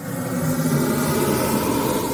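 Intro sound effect for an animated logo reveal: a loud whoosh of rushing noise over a low steady drone, swelling in over the first half-second and then holding.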